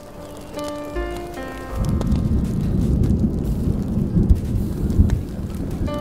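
Deep thunder rolls in about two seconds in and rumbles loudly for several seconds over steady rain. Smooth jazz notes play before the thunder and again near the end.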